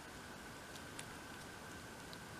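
Quiet handling sounds of a pointed metal tool nudging miniature packets into a tiny wicker basket: a faint click about a second in, over a faint steady high whine in the room.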